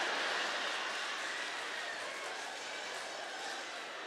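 Live audience laughing in reaction to a punchline, an even crowd noise that slowly dies down.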